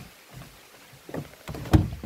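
Footsteps and hollow knocks on the floor of an aluminium fishing boat, a few scattered ones building to the loudest thump near the end.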